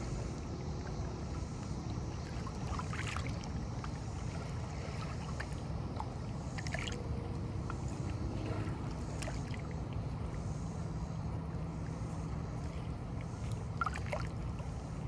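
Lake water lapping against shoreline rocks: a steady low wash with a few brief splashes as small waves slap the stones.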